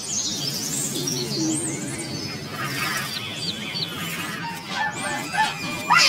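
Birds chirping and calling in short high rising and falling notes over a steady low hum, with a loud cry breaking in at the very end.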